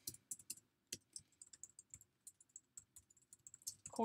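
Faint typing on a computer keyboard: a run of separate key clicks, a few of them louder in the first second.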